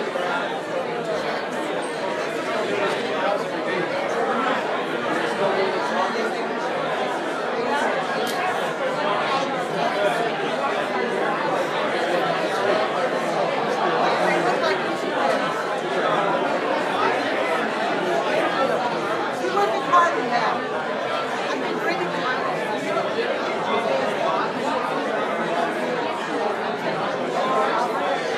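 Congregation chatter: many people talking at once in a large room, overlapping conversations with no single voice standing out.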